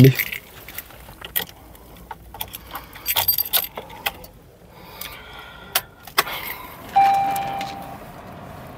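Car keys jangling and clicking in the driver's hands in a Toyota Glanza's cabin. About seven seconds in, a steady electronic chime from the dashboard sounds and slowly fades as the ignition is switched on.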